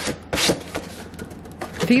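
A fabric lampshade being handled and pressed shut along its Velcro strip: a click, then a short scratchy rustle about half a second in, and a light tap. A woman's voice starts right at the end.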